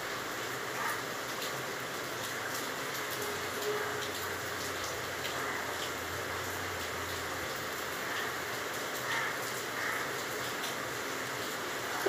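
Golgola pitha dough balls deep-frying in hot oil: a steady sizzle with small scattered crackles.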